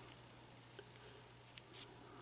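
Near silence: quiet room tone with a low steady hum and a few faint ticks in the second half.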